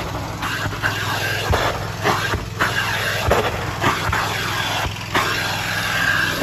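Carpet-cleaning extraction machine running: a steady low motor hum under a loud rushing hiss of spray and suction, which surges and dips in repeated strokes of the wand.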